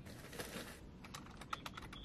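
Faint typing on a computer keyboard: a brief soft rustle, then a quick run of light key clicks through the second half.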